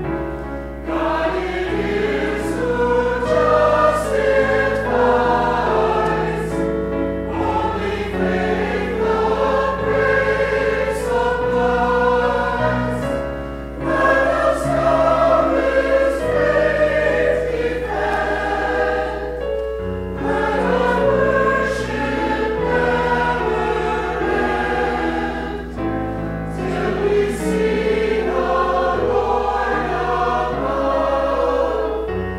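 Mixed choir of men and women singing a sacred anthem in parts with keyboard accompaniment. The phrases are separated by brief pauses about every six seconds.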